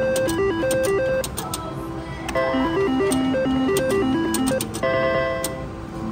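IGT Triple Stars reel slot machine playing its electronic spin melody, a quick stepping tune of clear notes, while the reels turn. Sharp clicks sound over it, and a held chord comes near the end as the reels come to rest.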